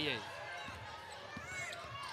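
Basketball game sounds on a hardwood court: a ball bouncing and a faint sneaker squeak near the end, over low arena background.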